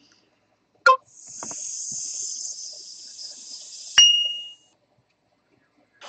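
A short click, then about three seconds of high hiss, ending in a sharp metallic ding that rings for about half a second.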